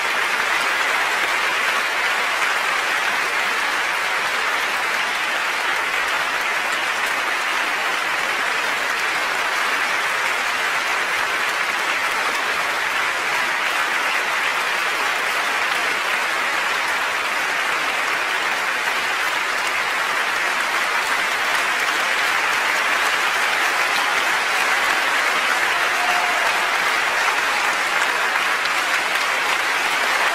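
A concert-hall audience applauding in a sustained ovation, a steady dense clapping that swells a little near the end.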